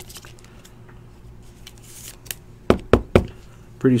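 Trading cards and plastic top loaders being handled on a table: faint rustling and sliding, then three sharp taps about a quarter second apart near the end.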